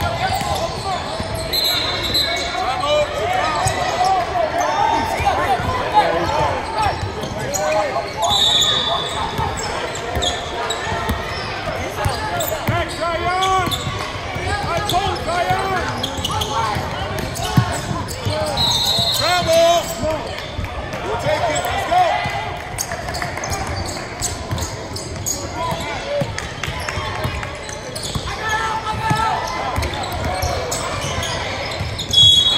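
Basketball game sounds on a hardwood gym floor: a ball bouncing and sneakers squeaking in short high-pitched chirps, three times, over steady unintelligible voices of players and spectators in a large hall.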